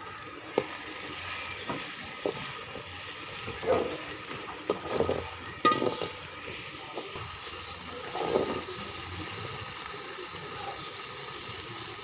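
Chopped onions and tomatoes frying in a metal kadai with a steady sizzle. A metal spoon stirs and scrapes them in several short bouts, with a few sharp clicks of the spoon against the pan.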